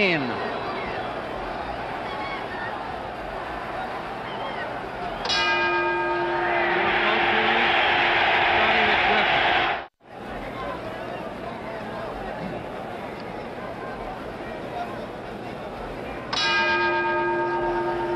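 Boxing ring bell, one long held ring of about four seconds starting about five seconds in, over arena crowd noise that swells into a cheer while it sounds. After a brief dropout in the sound, the bell rings again near the end, signalling the start of round 14.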